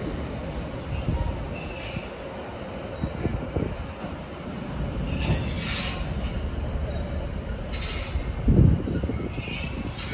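Class 156 diesel multiple unit pulling out along the platform, its underfloor diesel engines giving a steady low rumble while its wheels squeal in short high-pitched bursts several times on the curving track. A loud low thump comes about eight and a half seconds in.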